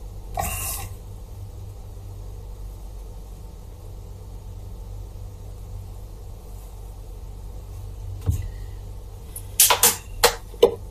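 Low steady background hum, with a brief soft noise just after the start, a single click about eight seconds in, and a quick cluster of sharp clicks near the end.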